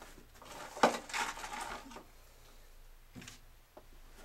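A sharp knock about a second in, followed by about a second of rustling and a smaller knock near three seconds, typical of handling noise in a range booth.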